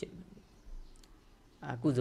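A man's speaking voice breaks off, leaving a pause of about a second and a half with a faint click in it, then resumes near the end.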